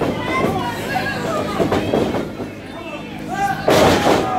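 Spectators' voices shouting around a wrestling ring, then near the end one loud slam as a wrestler's body hits the ring canvas.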